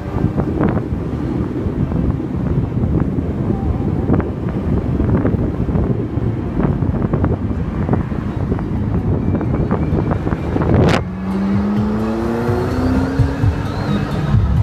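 A McLaren sports car driving at low speed, heard from the cabin: a dense, steady engine and road rumble. About eleven seconds in, a sharp click cuts it off, and a pitched tone then rises steadily.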